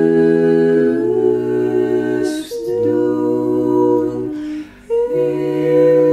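Four-part a cappella singing: several voices hold notes together in harmony, moving to new chords about once a second, with two short breaks between phrases.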